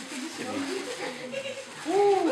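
Several children's voices chattering over one another, indistinct, growing louder near the end.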